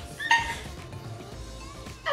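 A woman's short, high-pitched squeal of laughter just after the start, then faint background music.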